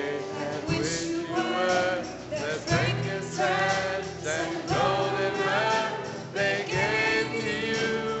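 Live church band music: a sung melody with held, wavering notes over piano, electric bass and drums.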